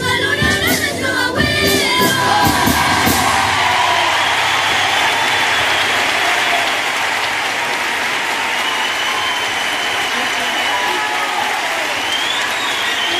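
A children's carnival choir with Spanish guitars ends a pasodoble on a final held chord, then the theatre audience applauds from about three seconds in.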